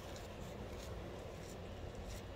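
Faint, steady seashore background noise: a low rumble of wind and distant surf, with no distinct events.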